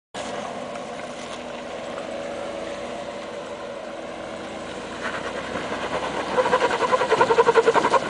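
Jeep Wrangler JK engine running as the Jeep crawls up a rocky climb. It grows louder about five seconds in, then pulses rapidly, about eight times a second, near the end.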